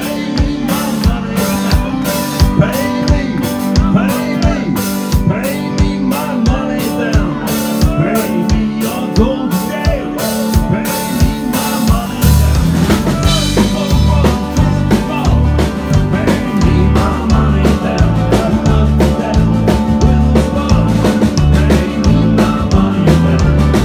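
Live rock band playing, the drum kit keeping a steady beat with regular hits under a wavering melodic lead line. About halfway in, a deep bass part comes in louder.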